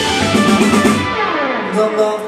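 Live indie rock band with electric guitar, bass and drums playing out the end of a song. About a second in, the drums and cymbals stop and a note slides down in pitch while the rest rings on.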